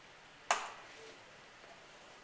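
A single sharp click with a short ring about half a second in, from hands working the bolts and fittings on the lid of a stainless-steel high-pressure cell. Otherwise faint room hiss.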